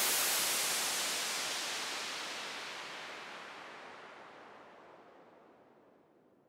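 The closing white-noise wash of an electronic dance track, heard on its own once the beat has cut off: an even hiss that fades out steadily over about five seconds, its highest part dying away first.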